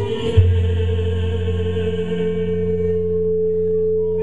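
A man singing a mariachi ranchera into a karaoke microphone, holding one long steady note over the backing track's sustained chord.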